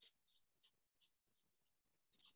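Pencil scratching on sketchbook paper in a quick run of short, faint strokes as a small circle is drawn.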